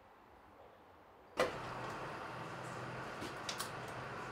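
Quiet station ambience, then about a second and a half in a sudden knock and the steady running of a narrow-gauge diesel railcar's engine, heard from inside the cab. A few light clicks come near the end.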